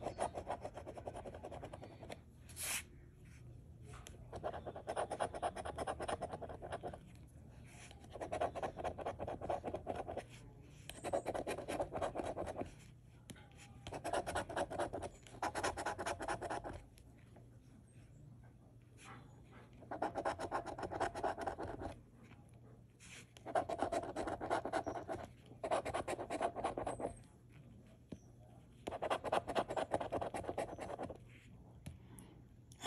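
A coin scratching the scratch-off coating from a lottery ticket, in repeated bursts of rapid strokes, each a second or two long, with short pauses between as the coin moves from spot to spot.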